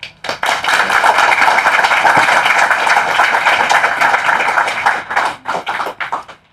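Audience applauding: a dense run of many hands clapping that thins out to a few last claps near the end.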